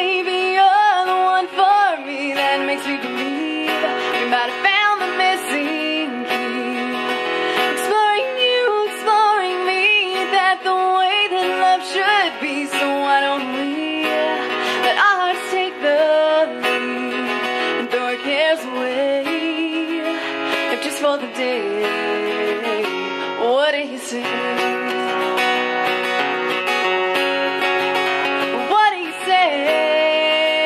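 A woman singing an original song live, accompanying herself on a strummed acoustic guitar.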